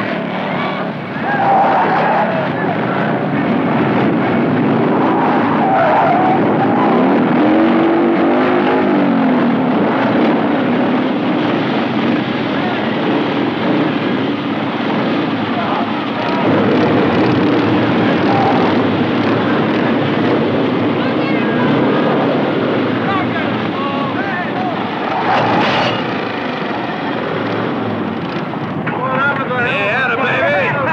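Several motorcycle engines running and revving together, rising and falling in pitch, with men shouting over them.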